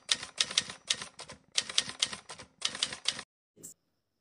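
Typewriter sound effect: rapid mechanical key clacks in four quick bursts with short gaps, laid under a title being typed onto the screen, followed by one short high click near the end.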